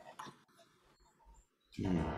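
A near-silent pause with faint room noise. Near the end a man's voice briefly starts up.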